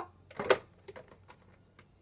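One sharp plastic knock about half a second in, followed by a few faint ticks: the top panel of a Cricut Expression cutting machine is being propped up on a wooden paddle pop stick.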